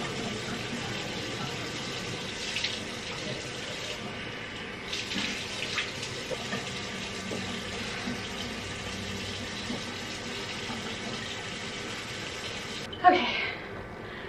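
Bathroom sink tap running steadily while water is splashed onto the face with cupped hands, with a few louder splashes in the first half. A brief louder burst near the end, as the tap stops.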